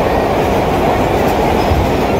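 Vintage New York City subway train running on the track, heard from inside the car: a loud, steady rumble of wheels and running gear.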